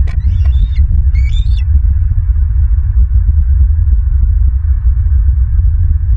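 Two short, high-pitched bird calls in the first two seconds, over a loud, continuous low rumble.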